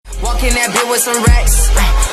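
Sped-up hip hop track with rapped vocals over heavy, booming bass hits, coming in right at the start after a moment of silence.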